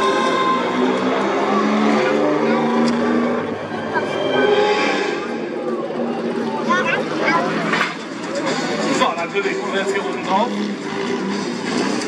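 A BMW 3 Series car's engine running, mixed with voices and music.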